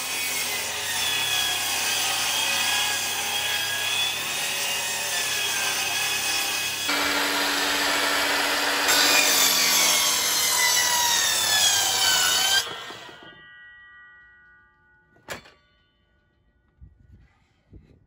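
Electric mitre saw cutting wooden boards, its motor whine dipping and rising as the blade works through the wood. The sound changes abruptly partway through, stops about twelve seconds in and fades as the blade winds down, with one sharp click a couple of seconds later.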